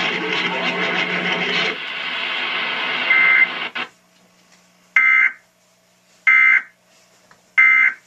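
Television audio of the Emergency Alert System test: jumbled music and voices play for about the first four seconds and cut off abruptly. Then come three short, evenly spaced bursts of harsh data tones from the EAS end-of-message code, heard through the TV speaker.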